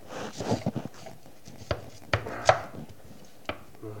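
Large kitchen knife cutting through a hard raw sweet potato and knocking on a wooden cutting board. A short scrape of the blade is followed by a series of sharp knocks, the loudest about halfway through.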